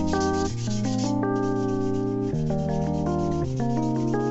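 Scratchy rubbing of a steel knife blade being hand-sanded back and forth on a flat abrasive, loudest in the first second, under background music of held notes that change every second or so.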